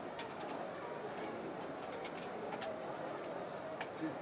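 Busy shop ambience: a steady low murmur with a few short, sharp high ticks or clinks scattered through it.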